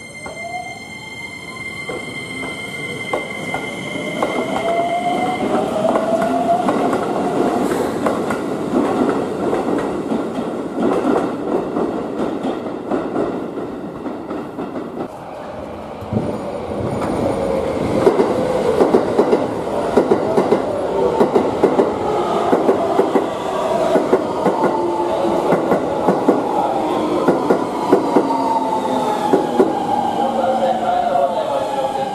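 Keikyu electric commuter train running, its traction motors whining in a pitch that climbs over the first several seconds as it gathers speed. From about halfway, a rapid clatter of wheels over rail joints and points, with squealing wheels and a motor whine that falls in pitch near the end as a train slows.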